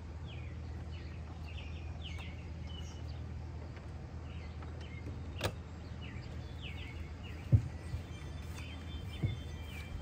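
Birds chirping repeatedly over a steady low hum. A sharp click about halfway through, as the RV's entry door is opened, is followed by two thumps of footsteps coming down the fold-out metal steps.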